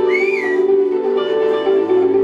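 Live rock band playing an instrumental passage on electric guitars, bass guitar and drums, with held notes. A brief high whistling tone rises and falls in the first half second.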